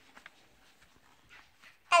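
Faint soft rustles of a paper picture-book page being handled, then a young girl's high voice starting to read aloud near the end.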